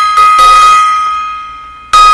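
Small hanging brass gong struck by hand, ringing loudly with one clear steady tone and its overtones and fading away. It is struck again just before the end.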